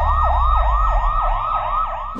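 Police-style electronic siren in a fast yelp, its pitch sweeping up and down about four times a second, over a low rumble.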